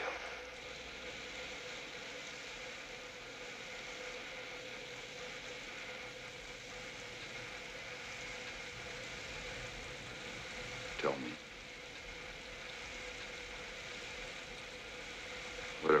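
Shower spray running steadily, an even hiss of falling water, with a brief falling vocal sound about two-thirds of the way through.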